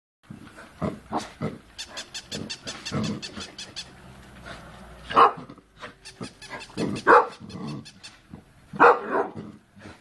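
Bull terrier barking at a toy robot dog: three loud single barks about five, seven and nine seconds in, with lower growly sounds before them and a quick run of clicks around the second and third seconds.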